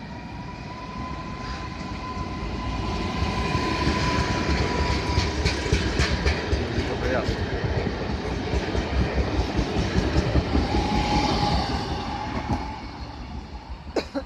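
Newag Impuls 45WE electric multiple unit pulling into the station and passing close by, with a steady whine and wheels clicking over the rails. It grows louder over the first few seconds and fades near the end.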